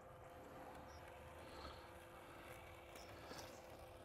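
Near silence: the faint, steady hum of a Sveaverken Blix robotic lawn mower as it drives and cuts, with a few faint high chirps.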